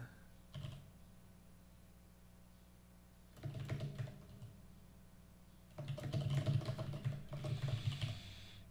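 Computer keyboard typing in bursts: a brief burst of keystrokes near the start, another around three and a half seconds in, and a longer, denser run of keystrokes over the last two seconds.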